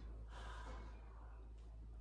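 Faint room tone with a soft breath-like exhale in the first second, over a steady low hum.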